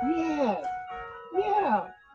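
A voice speaking in two short phrases over soft background music with held, sustained notes.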